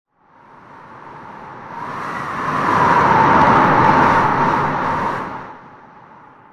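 A whoosh sound effect: a rushing noise that swells up from silence over about three seconds, peaks, then fades away, like something sweeping past.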